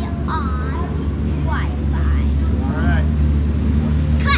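Steady low hum of engines running, with a child's voice speaking in short snatches over it.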